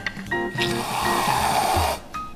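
Background music with held notes; about half a second in, an aerosol can of whipped cream hisses for just over a second as cream is sprayed onto a slice of pumpkin pie.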